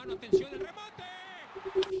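A man's voice, with one drawn-out call lasting about a second near the middle.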